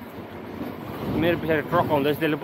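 A man speaking to the camera from about a second in, with wind noise on the microphone before and under his voice.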